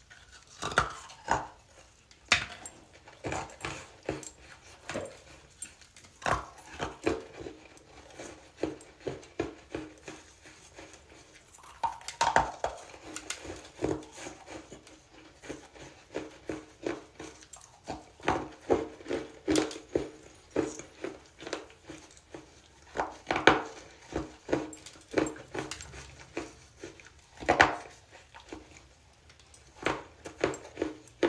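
Chunks of hardened baking soda being bitten and crumbled: a long run of crisp, irregular crunches that come in clusters with short pauses between them.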